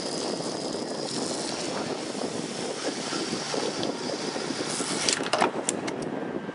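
Diesel fuel running from a pump nozzle into a truck's fuel tank: a steady rushing hiss, with a few sharp clicks about five seconds in.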